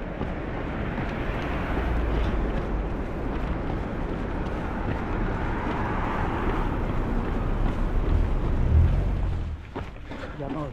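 Road traffic passing close by: a steady rush of tyres and engines with a low rumble. It swells near the end, then drops away suddenly.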